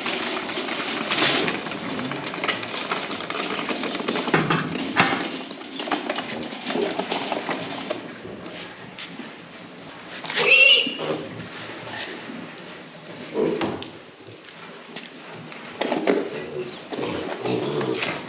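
A wire cage trolley rattling as it is wheeled over concrete for the first several seconds, then piglets grunting as they are handled, with one short high squeal about ten seconds in.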